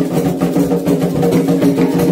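Candomblé ritual music: atabaque hand drums playing the rum rhythm for Iemanjá in steady repeated strokes, with a group singing along.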